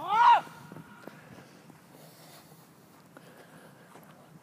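A man's shouted call, cut off within the first half-second, then faint open-air background with a few soft, distant knocks.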